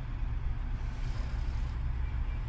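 Steady low hum and rumble of a car's engine idling, heard from inside the cabin.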